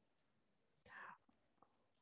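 Near silence, with one brief, faint breathy voice sound, like a whisper, about a second in.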